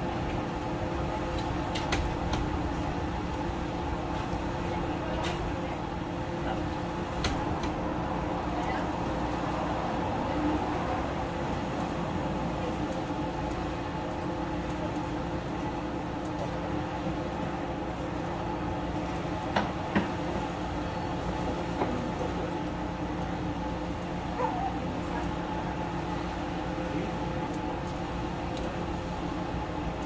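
A steady machine drone holding several fixed tones, with a few sharp clicks and taps as a recessed ceiling light fixture is handled, two close together about two-thirds of the way in.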